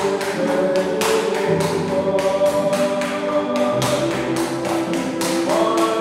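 Tap dance steps: shoes striking a tiled floor in a quick, even rhythm of several taps a second, over choral vocal music with long held chords.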